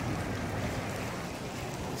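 Steady rain falling, an even hiss with no separate drops standing out.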